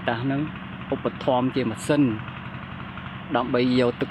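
A man speaking Khmer in short phrases, over the steady low hum of a small engine running.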